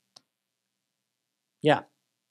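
Near silence, broken by one faint short click early on, then a man saying a single 'yeah' near the end.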